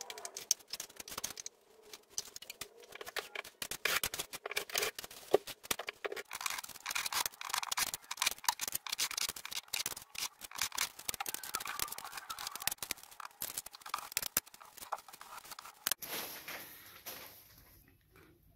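A metal drywall knife scraping and slapping setting-type joint compound, in quick irregular strokes, as the mud is loaded from a metal mud pan and worked into the ceiling seams. A steady hiss takes over near the end.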